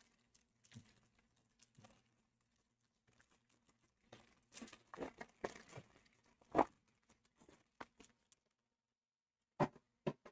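Foil wrapper of a trading-card pack being torn open and crinkled by hand: faint, scattered crackles, the loudest about two-thirds of the way in.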